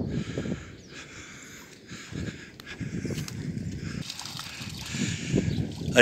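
Footsteps on a dirt path with camera handling noise: soft, uneven thumps and rustles over faint outdoor ambience.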